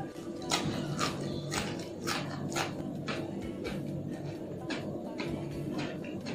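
Close-miked chewing of a crunchy mouthful of cucumber, with crisp crunches about twice a second that are strongest in the first half, over steady background music.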